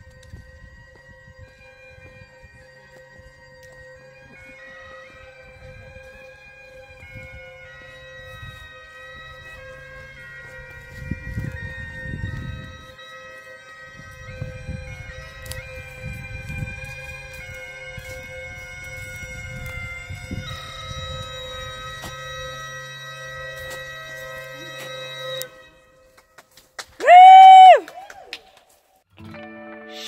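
Travel bagpipes heard faintly and echoing: a steady drone under a chanter melody, which stops a few seconds before the end. Intermittent low rumbles run through the middle, and near the end a short, very loud tone bends up and back down.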